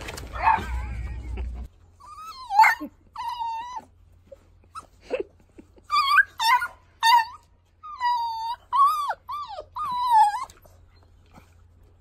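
Beagle puppy whining and yipping in play: a dozen or so short, high calls that bend up and down in pitch, starting about two seconds in and stopping shortly before the end. A snatch of music is heard at the very start.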